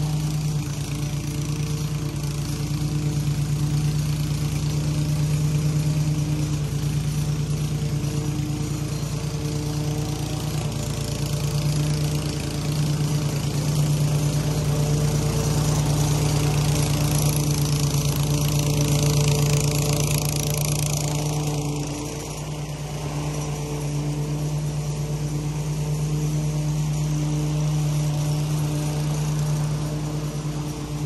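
Walk-behind lawn mower's small engine running steadily while it cuts grass, a constant engine hum that swells and fades a little as the mower moves, dipping briefly about two-thirds of the way through.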